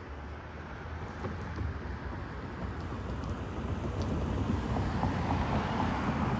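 Steady outdoor rushing noise, with no distinct events, that slowly grows louder over the few seconds.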